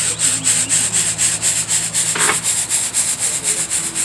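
Freshly roasted coffee beans shaken in a stainless-steel mesh colander to cool them, rattling and swishing in an even rhythm of about five shakes a second. A low steady electric hum, from the small fan under the colander, runs beneath it.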